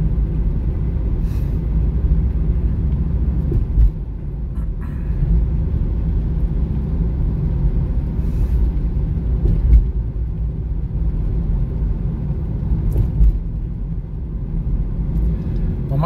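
Road noise inside a moving car at highway speed: a steady low rumble of tyres and engine, with a few brief knocks along the way.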